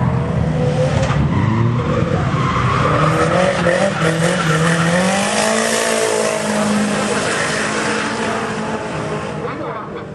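Nissan 180SX drift car's SR20 four-cylinder engine held at high revs, its pitch climbing slowly, with tyre squeal as the car slides sideways through a corner. A laugh is heard near the start.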